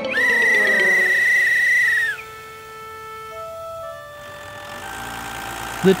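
A police whistle blown in one long blast of about two seconds: a steady high tone that bends up at the start and drops away at the end. Quieter held music notes follow.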